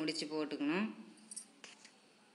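A voice speaking for about the first second, then a few faint clicks as yellow macrame cord is worked onto a small metal ring.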